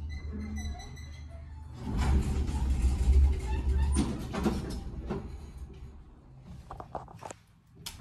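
Elevator arriving at a floor, its two-speed sliding doors opening with a low rumble about two seconds in, followed by a few light clicks near the end.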